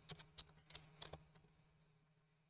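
Faint computer keyboard typing: a quick run of about seven key presses over the first second or so.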